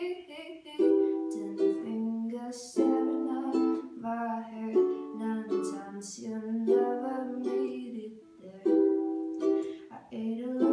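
A woman singing to her own ukulele accompaniment, with strummed chords changing about every two seconds.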